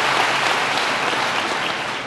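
Large indoor audience applauding, dying down slightly near the end.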